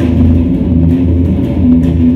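Electric guitar being played, loud, mostly low notes held for about half a second each.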